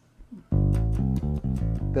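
Waterstone five-string electric bass plucked in a quick run of notes, starting about half a second in, heard as a straight direct tone with no compression.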